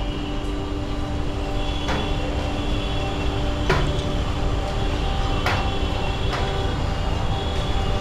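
A steady low background rumble with a faint steady hum, and a few soft clicks scattered through it.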